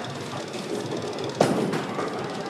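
Bowling alley din with one sharp impact about one and a half seconds in.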